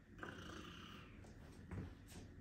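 Quiet room tone with a steady low hum. A faint hiss starts about a quarter second in and lasts under a second, and a soft low thump comes near the end.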